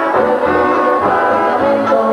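Brass band music, with horns holding chords over low bass notes.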